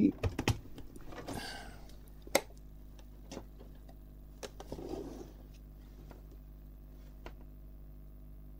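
Scattered light clicks and knocks, with a couple of soft rustles, as hands handle and lift a small metal project box on a workbench mat. A faint steady hum runs underneath.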